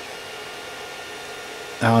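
Creality 3D printer running mid-print: a steady whir from its cooling fans, with a few faint steady tones. A voice starts near the end.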